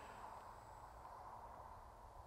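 Near silence: a faint steady background hiss with a thin low hum.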